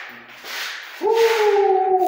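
A person's voice held in one long, high call, starting about a second in with a quick upward swoop and then sagging slightly in pitch. A brief soft rustle comes just before it.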